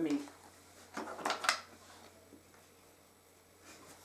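A few quick clicks and clatters about a second in, as a cut-out letter of a moveable alphabet is lifted out of its wooden compartment box, knocking against the box and the other letters.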